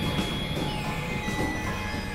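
Layered experimental noise and drone music: a dense, steady rumbling wash with high whistling tones, one of which steps down in pitch partway through.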